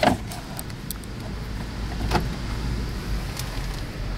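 Low steady hum of a 2016 Toyota Land Cruiser's 5.7-litre V8 idling, heard from inside the cabin, with a couple of light clicks, one at the start and one about two seconds in.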